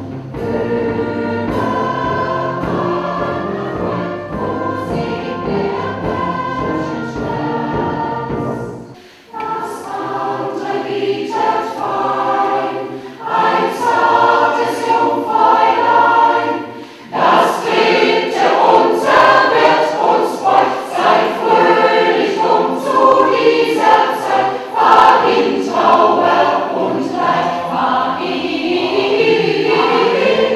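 A mixed choir of men and women singing, with a deep low accompaniment under the voices for the first nine seconds. The sound breaks off briefly about nine seconds in and again about seventeen seconds in, then comes back louder.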